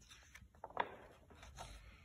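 Faint rustle of a picture-book page being turned, a few short soft paper sounds that are loudest a little under a second in, over quiet room tone.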